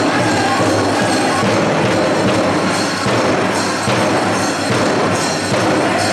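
Pow wow drum group playing a Grand Entry song, drumming steadily, with the metal jingles and bells on the dancers' regalia rattling in time.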